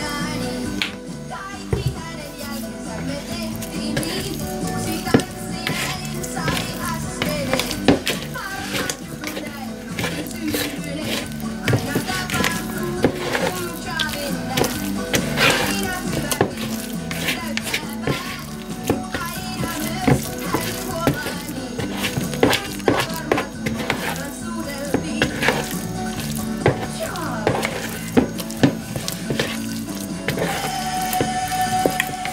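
A song playing on a radio. Over it come repeated squelches and scrapes of a plastic spatula working olive oil into sticky whole-wheat dough in a plastic mixing bowl.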